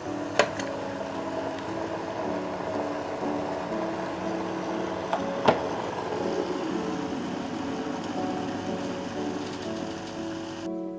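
Background music over water sloshing in a sous vide water bath as a zip-top bag of spare ribs is lowered in, with two sharp clicks, one about half a second in and one about five and a half seconds in.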